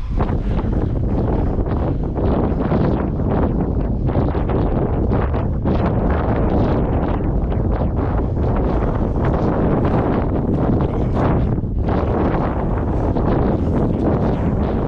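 Wind buffeting the camera's microphone: loud, steady wind noise with no clear footsteps or rock sounds standing out.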